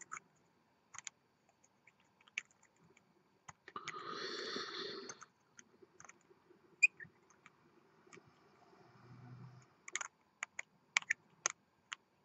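Faint, sparse clicks and ticks of fingers and metal threads as a threaded part is screwed slowly by hand onto the tube of a mechanical vape mod, with a brief soft rustle about four seconds in and a small cluster of clicks near the end.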